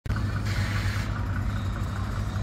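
Street traffic: motor vehicle engines running with a steady low rumble.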